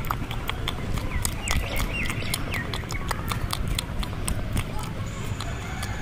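Close-miked ASMR clicking: quick, irregular sharp clicks, several a second, right at the microphone, over a low rumble, with a few short chirping whistles in the middle.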